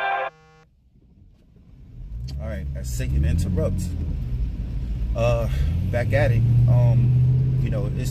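Music cuts off just after the start. After about a second of near silence, a car's engine and road noise heard from inside the cabin build up into a steady low hum that rises slightly in pitch, with brief wavering higher sounds and short clicks over it.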